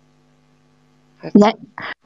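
Faint steady electrical mains hum, a low buzz with several evenly spaced overtones, carried on the call audio. It cuts off when a woman starts speaking about a second in.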